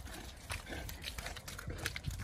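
Irregular footsteps and rustling on wet, muddy grass.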